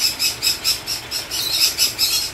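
Pet parrots chirping in a fast, even run of short high calls, about five a second.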